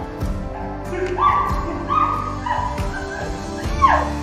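A woman's muffled cries through a gag, several short whimpering wails from about a second in, the last one falling in pitch, over background music.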